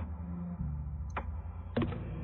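Low steady background hum with three short sharp clicks: one at the start, one about a second in, and one near the end.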